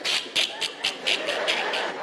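A man laughing hard in short breathy bursts, about four a second.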